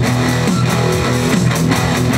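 Live rock band playing an instrumental passage between sung lines: electric guitars over a drum beat.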